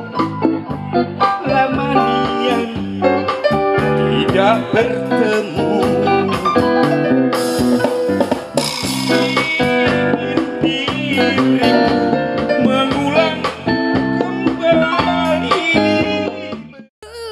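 Live band music: a man sings into a microphone over a Korg electric keyboard and an electric guitar.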